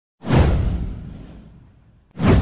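A single whoosh sound effect that starts sharply, sweeps down from a high hiss to a deep rumble, and fades out over about a second and a half.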